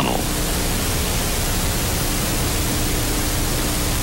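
Steady hiss of an old film soundtrack with a faint steady hum underneath, unchanging throughout.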